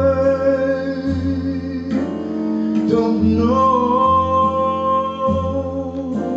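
Live jazz quintet: a male vocalist sings into a microphone over double bass, piano and guitar, holding one long note about halfway through while the bass moves underneath.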